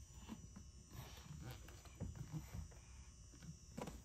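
Mostly quiet, with faint scattered handling sounds around a plastic liquid-detergent bottle at a washing machine's dispenser drawer, and a short sharp click near the end.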